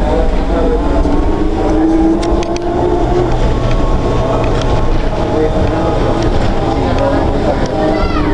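Interior noise of a Flyer trolleybus under way: a steady low rumble, with a low hum for a few seconds and a few brief clicks, under background chatter of passengers.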